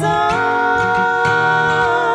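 Music: a woman's voice holds one long sung note, starting about a quarter second in, over a low sustained accompaniment.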